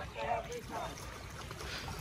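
People's voices talking in the background during the first second, then low steady outdoor noise. No engine or motor is running.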